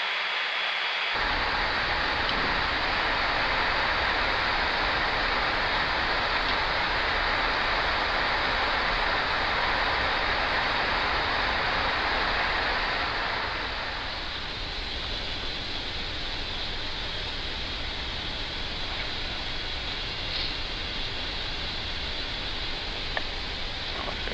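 Steady rush of air noise on the flight deck of an Airbus A340-300 in flight. It eases slightly about halfway through.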